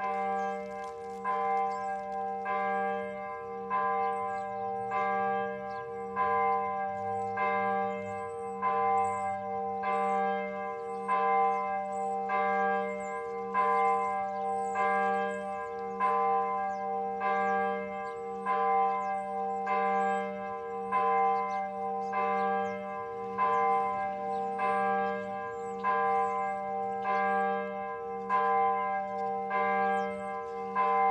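A church bell tolling, struck about once a second on the same note each time, each stroke ringing on into the next.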